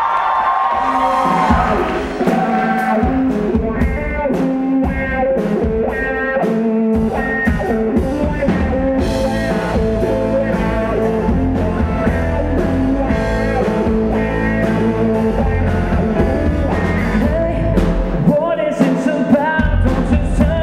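Live pop-rock band playing: electric guitar, drum kit and electric keyboard over a steady drum beat, with the bass filling out about seven seconds in.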